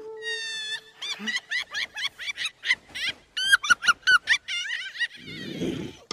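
A quick run of high-pitched squeaky chirps that rise and fall in pitch, from a cartoon soundtrack, opening with a short rising whistle-like squeal over a held lower note that ends about a second in.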